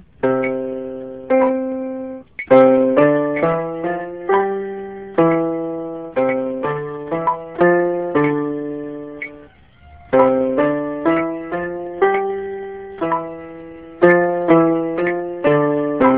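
Electronic keyboard on a piano voice played with both hands: a slow finger-dexterity exercise of single notes and chords struck one after another, each dying away, with a short break a little past halfway.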